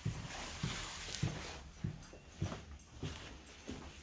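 Footsteps going down a wooden staircase: about seven short knocks, one step roughly every half second.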